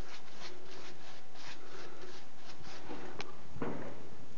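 A small brush scrubbing against a rough textured plaster wall in short repeated strokes, about three a second. Near the end there is a sharp click and then a heavier knock.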